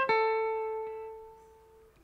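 Ibanez electric guitar with a clean tone and very slight overdrive: a single picked note, the A at fret 14 on the third string that ends a rising phrase over A minor. It is left to ring and fades out over about two seconds.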